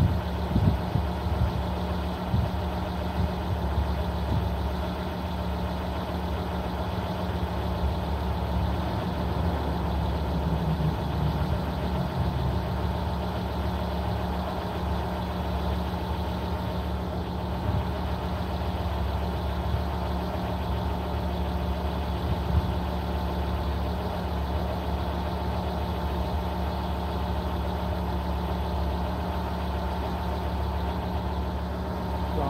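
Volvo 850R's turbocharged inline five-cylinder engine idling steadily with the hood open, with a few brief knocks near the start and one about two-thirds of the way through.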